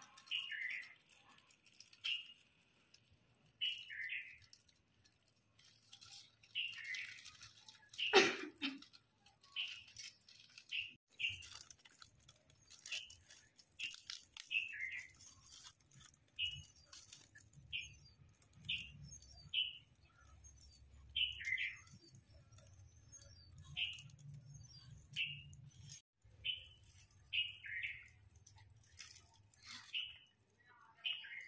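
A bird chirping again and again, a short falling chirp about once a second, over light rustling of snack packets being handled. A single sharp click about eight seconds in.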